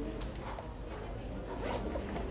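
Low murmur of students talking quietly among themselves in a classroom, with a short high rasp about one and a half seconds in.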